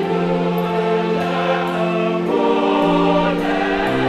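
Mixed choir of men's and women's voices singing in parts, holding long chords that change twice.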